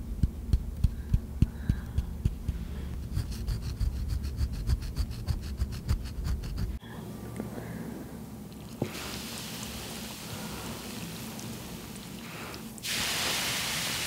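Long fingernails tapping and scratching on crystal-geode bath bombs close to the microphone: a rapid run of sharp clicks. Then a bath bomb fizzing in a glass bowl of water, a steady hiss that grows much louder near the end.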